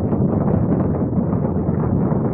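Saturn V rocket's first-stage engines firing at liftoff: a loud, steady, low rumbling noise.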